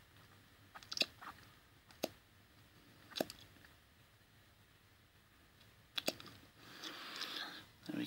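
Mouth clicks and lip smacks, four sharp ones spread over several seconds, as a MAP sensor's vacuum port is sucked on and released by mouth to pull a vacuum. Near the end comes a breathy rush of air.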